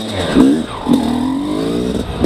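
2017 Yamaha YZ250X two-stroke dirt bike engine on an XTNG GEN3+ 38 metering-rod carburetor, revving briefly twice, then held at low revs with its pitch creeping slowly upward as the bike slows almost to a stop.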